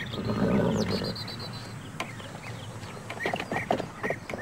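A horse blowing or snorting through its nostrils in the first second, followed by a bird's short, rapid high trill, with a few light knocks after it.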